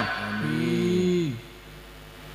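A man's voice through a PA system holding one long, low, drawn-out note for about a second and a half. It drops in pitch and fades out, leaving only faint background hum.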